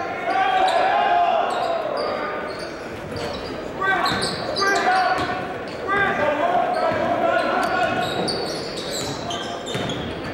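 Live high school basketball game echoing in a gym: shouting voices from players and the crowd, with a basketball being dribbled on the hardwood court and high sneaker squeaks. There is long shouting near the start and again about six seconds in.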